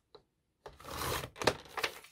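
Sliding paper trimmer's blade carriage pushed along its rail, cutting through a magazine page: a swish about half a second long, then two sharp clicks as the trimmer and cut paper are handled.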